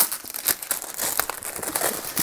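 Clear plastic shrink-wrap being torn open by hand and pulled off a small cardboard box, crinkling and crackling, with a sharp snap at the start.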